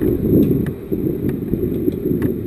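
Motorcycle engine running at low revs as the bike moves slowly, an uneven low rumble with a few faint clicks.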